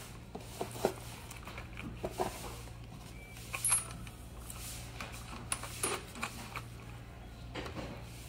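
Irregular light metallic clicks and clinks of steel nuts and a wrench being handled on the bolts of a sprung scooter seat's clamp bracket as the nuts are screwed back on.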